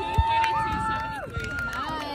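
Spectators' long, high-pitched held cheering yells, several voices overlapping and changing pitch as one fades and another starts.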